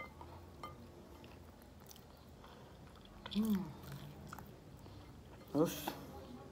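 A person chewing a mouthful of chicken, with small wet mouth clicks and lip smacks. A short "mm" of enjoyment about three and a half seconds in, and a brief louder vocal sound near the end.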